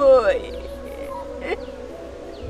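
A woman's wailing cry falls away in pitch during the first half-second, then trails into quieter weeping over a steady, held background music tone.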